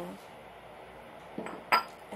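A small glass bowl is set down with one sharp, ringing clink near the end, just after a brief scrape.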